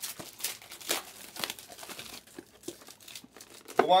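Trading-card pack wrappers crinkling and being torn open by hand, an irregular run of crackles and rustles; a man's voice starts right at the end.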